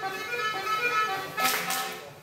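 Breton dance tune with a steady melody, and the dancers clapping their hands in a short burst of claps about one and a half seconds in.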